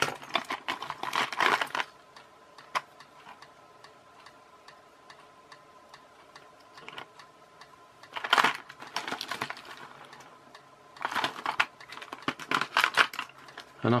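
Rapid clicking and rattling of a clear plastic tub of electronic parts being handled on a cluttered workbench, in three bouts: at the start, about eight seconds in, and again from about eleven to thirteen seconds. A faint steady whine sits underneath.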